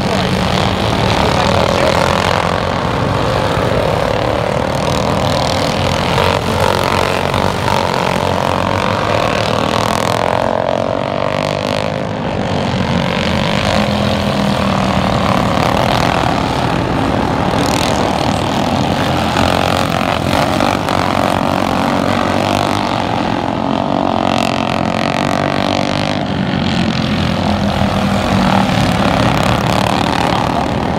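Several racing lawn mowers' small engines running at race speed together, a steady buzzing drone whose pitch rises and falls as the mowers go round and pass by.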